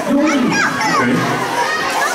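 A crowd of young children talking and calling out all at once, many high voices overlapping.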